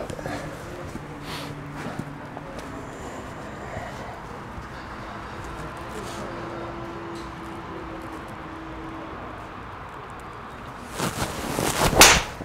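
Low steady background noise for most of the stretch, then near the end a PXG Black Ops driver swings through and strikes a teed golf ball with a sharp crack, the loudest sound.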